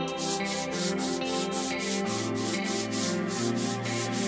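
Hand sanding a painted wooden shelf: quick, even back-and-forth scratchy strokes, about five a second, over background music with held guitar-like tones.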